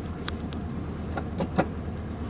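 Air-cooled Volkswagen Beetle flat-four engine idling steadily just after a cold start, heard from inside the cabin, with a few light clicks.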